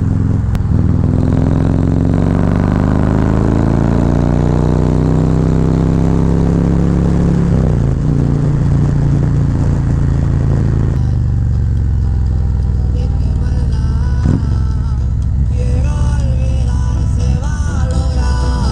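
Harley-Davidson touring motorcycle's V-twin engine under way, rising in pitch as it accelerates and dropping back about seven and a half seconds in. From about eleven seconds, music with singing comes in over the continuing engine sound.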